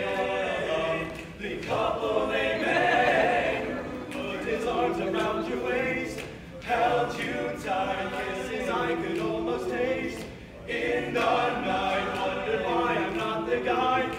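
A small ensemble of teenage boys sings a cappella in parts. The sung phrases are broken by three brief pauses for breath.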